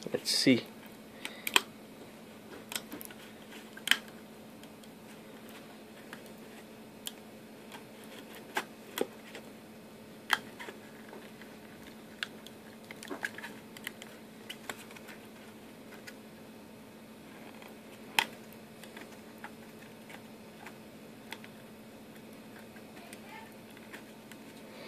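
Scattered sharp clicks and taps of a small 3D-printed plastic scissor lift being handled and pried at while its printed-together sides are still a little stuck. A steady low hum runs underneath.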